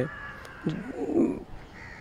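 A crow cawing faintly, a rough call about a second in.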